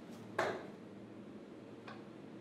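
A dart striking a Unicorn Eclipse HD2 sisal-bristle dartboard: one sharp click with a short ring about half a second in, then a fainter click near the end as a further dart lands.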